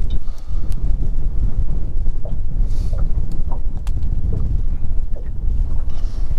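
Steady wind rumble on the microphone. Over it come irregular light clicks and taps of tackle being handled inside an open boat storage compartment.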